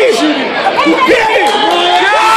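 Crowd of spectators shouting and yelling over one another, many voices at once.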